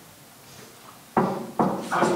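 Quiet room tone, then a person's voice starts abruptly a little past halfway and carries on loudly.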